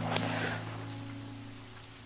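Soft background music holding low sustained notes that fade away gradually, with a brief soft hiss about a quarter second in.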